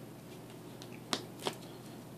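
Trading cards being handled on the table, with two sharp card clicks about a third of a second apart a little past the middle.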